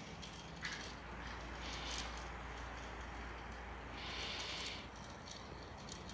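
Electric pedestal fan running, faint: a steady low hum under a soft hiss of air, with a few soft rustles.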